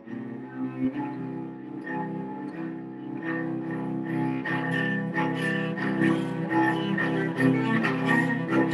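Solo cello bowed in a flowing line of notes, growing steadily louder.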